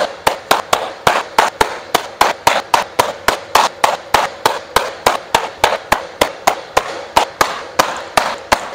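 Baseballs smacking into the pocket of a new, stiff SSK Z9 leather infield glove, caught one after another off a pitching machine. The sharp pops come rapidly and evenly, about three to four a second.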